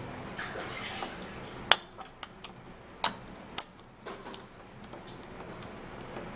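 Plastic pump dispenser of aloe vera gel being pressed over a metal spoon on a glass bowl: five sharp clicks and taps of plastic and metal against glass over about two seconds, starting a couple of seconds in, two of them much louder.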